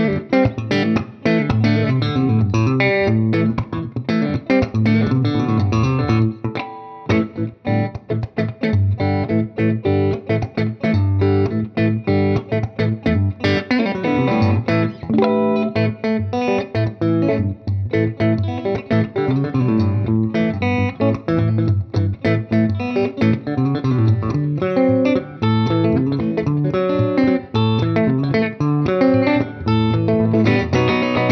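Electric guitar with humbucker pickups, played through an amplifier with the selector in the middle position (neck and bridge pickups together). It plays a steady run of plucked single notes and chords in a warm, bright tone with a slight fuzz, with a brief break about seven seconds in.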